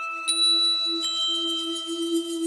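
Ambient background music: bell-like chime notes that ring on, struck twice, over a steady, slightly wavering low drone.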